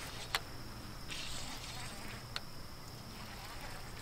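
Insects calling with a steady high-pitched drone, with two sharp clicks and a couple of brief soft hissy rustles as a fishing reel is worked to bring in a hooked catfish.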